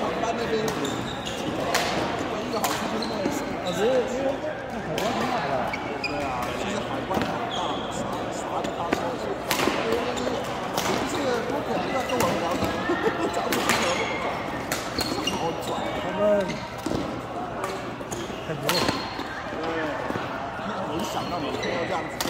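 Badminton rackets striking a shuttlecock in a doubles rally: sharp cracks at irregular intervals, one to a few seconds apart, in a large indoor hall, over people talking throughout.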